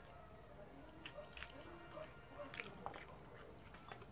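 A person chewing food by hand-fed mouthfuls, faint, with a few sharp mouth clicks and smacks.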